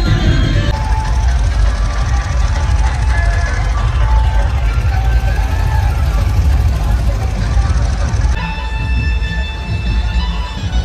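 Loud amplified music with heavy bass from a street sound system, mixed with the voices of a crowd. Near the end the noise thins and the melody lines of the music stand out more clearly.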